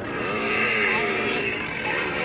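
The electronic engine sound effect of a toy prop chainsaw, revving with its pitch dipping and rising.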